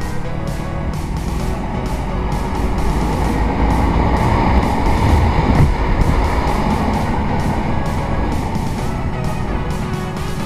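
Background music with guitar, and beneath it a motorcycle engine that swells louder around the middle, then eases back.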